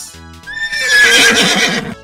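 A horse whinnying once: a loud, high call with a wavering pitch that slides gently down, starting about half a second in and lasting about a second and a half. Light background music plays under it.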